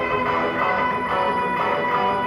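Cherman electric guitar played live, layered through a Nux Core loop pedal: overlapping, sustained notes in a steady instrumental passage.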